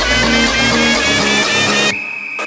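Electronic house music, instrumental: a steady bass line under repeating synth notes with short upward-sliding lines. Just before the end the bass drops out and the mix thins into a quieter break.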